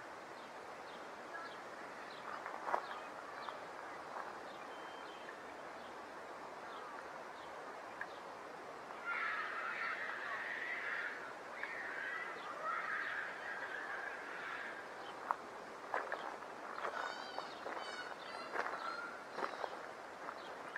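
Outdoor ambience with birds calling: a run of calls through the middle, then short high chirps near the end, over a steady background hiss. A few sharp clicks are scattered through it.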